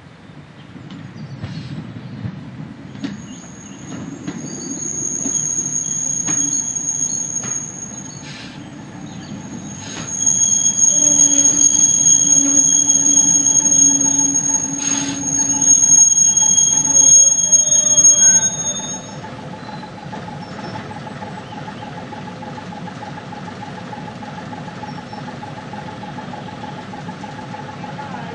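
Diesel railcar running into a station and braking to a stand, its wheels and brakes giving a loud, high-pitched squeal that builds over the first half and cuts off about two-thirds of the way through. After it stops, the engine idles steadily.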